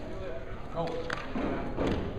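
Voices calling out in a gymnasium, including a short "oh" about a second in, with a few short sharp thuds, the loudest near the end, as two grapplers grip hands on the mat at the start of a match.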